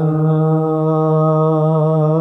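Gurbani kirtan: a male singer holds one long, steady sung note over a sustained harmonium, with no tabla strokes.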